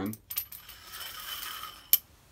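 A metal lightsaber hilt section sliding along a threaded rod: a light metallic scrape with a faint ringing, ending in one sharp clink near the end as it meets the end cap.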